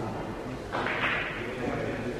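A pocketed pool ball knocking and rolling away through the table's ball return: a soft knock about three quarters of a second in, then a short rattling rush that fades over about a second.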